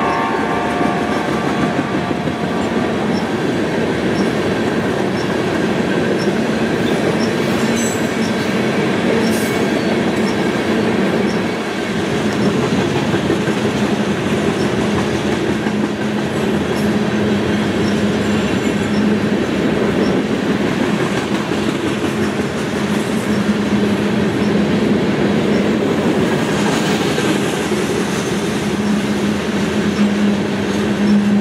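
Freight train of covered hopper cars rolling past, a steady rumble and clatter of steel wheels on rail. A locomotive horn fades out in the first two or three seconds.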